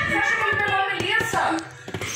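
A voice speaking over faint background music, dropping away about one and a half seconds in.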